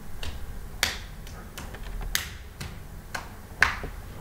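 About seven sharp clicks from working the computer's controls, spaced unevenly, the loudest just before the end.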